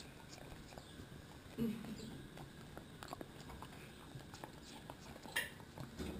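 A cockapoo licking and biting at an ice lolly, making faint wet smacking and licking clicks throughout, with one sharper click near the end.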